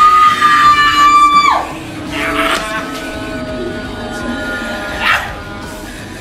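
A loud, high-pitched scream that rises sharply, holds for about a second and a half and then drops away. Music with steady held tones follows, with two short bursts of noise.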